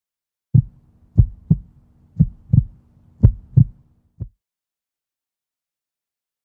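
Heartbeat sound effect: deep, short thumps in lub-dub pairs, about one double beat a second, over a faint low hum. The beats stop a little after four seconds in.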